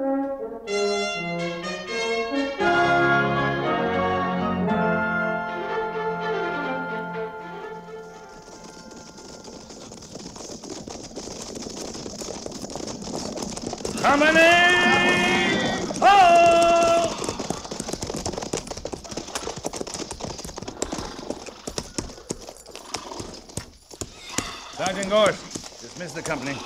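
Brass bridge music that fades out over the first several seconds, then radio sound-effect hoofbeats of a cavalry troop riding in. Two long, loud drawn-out calls come a little after the middle.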